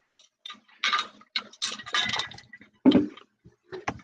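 Irregular clinking and clattering, a string of sharp knocks densest in the first half, with the loudest knock about three seconds in and one more near the end.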